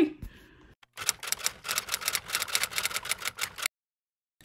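A fast, even run of sharp mechanical clicks, like typewriter keys, starting about a second in and stopping abruptly shortly before the end.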